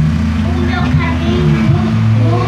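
Young girl singing a gospel song into a handheld microphone, her voice amplified, over a steady low drone of accompaniment.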